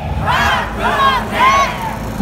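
A chant shouted through a loudspeaker: a man's voice calls three short syllables, each rising and falling in pitch, with a crowd shouting along.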